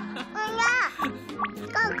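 A toddler's high voice calling out in short bursts over light background music, with a quick rising whistle-like tone about one and a half seconds in.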